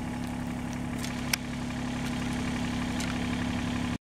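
Mini excavator's diesel engine idling with a steady hum. A single sharp click stands out about a third of the way in, with a few fainter ticks around it.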